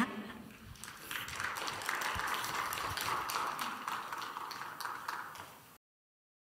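Audience applauding. The applause builds about a second in, runs steadily and then cuts off suddenly just before the end.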